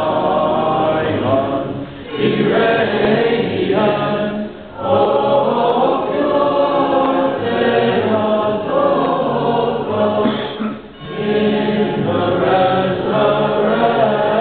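Church choir singing Orthodox liturgical chant a cappella in long held phrases. It breaks briefly for breath about two, five and eleven seconds in.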